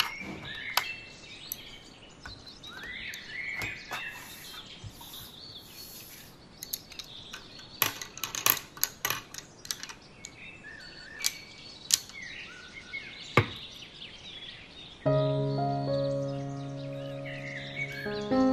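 Faber-Castell Polychromos coloured pencils clicking and knocking against their metal tin and the tabletop as they are picked out and laid down, with birds chirping in the background. Gentle music comes in near the end.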